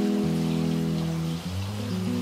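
Background music of held chords and sustained notes, changing about every second, over a soft, even hiss.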